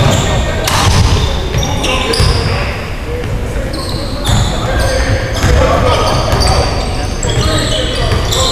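Basketball game on a hardwood gym floor: the ball bouncing, sneakers squeaking in short high chirps, and players' indistinct voices, all echoing in the large hall.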